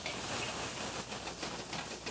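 Beef strips sizzling and crackling in very hot oil in a wok, a steady hiss dotted with small pops, starting the stir-fry.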